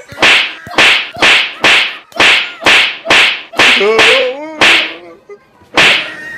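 A rapid run of about eleven sharp, loud slapping blows struck on a man, roughly two a second and very even, with a short pause before a last blow near the end. A man's cry rises and falls about four seconds in.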